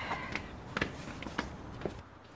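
Footsteps of people coming in through a front door: about five short, separate steps over a low background hum.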